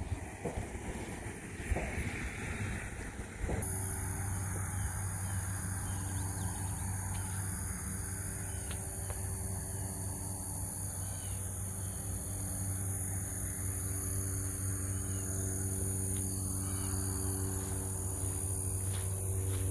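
Quiet outdoor background, then about three and a half seconds in a steady low machine-like hum starts abruptly and holds, with a steady high-pitched buzz above it.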